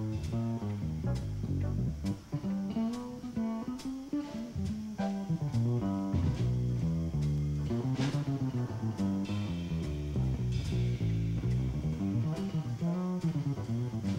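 Acoustic upright double bass played pizzicato in a jazz bass solo: a continuous run of plucked low notes.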